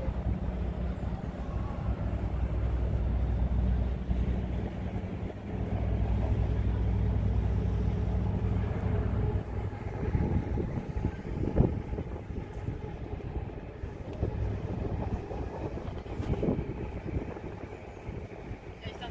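Low, steady engine rumble from a passing river tour boat, which fades about ten seconds in to quieter, uneven outdoor street sound with a few brief knocks.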